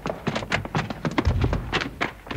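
Radio-drama sound effects of a hurried exit: a quick, irregular run of knocks and clicks, with a heavy low thump a little over a second in.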